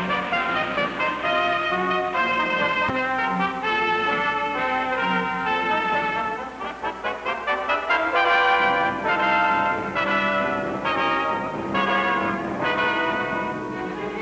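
Orchestral music score with prominent brass, playing a series of held chords with a passage of short, rapidly repeated notes midway.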